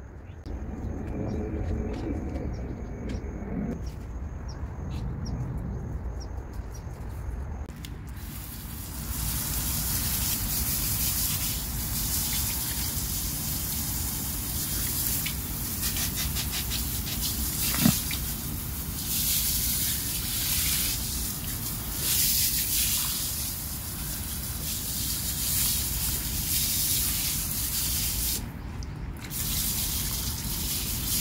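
Water spraying with a steady hiss that starts suddenly about eight seconds in and keeps swelling and easing in strength, with one sharp click about halfway through.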